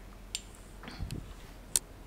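A few light, sharp clicks and a soft low thump as kitchen utensils and dishes are handled, with no one speaking.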